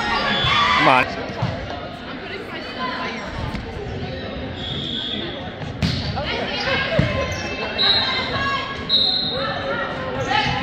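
Volleyball rally in a gymnasium: sharp ball hits, the clearest about six and seven seconds in, under players' and spectators' shouts and voices echoing in the hall.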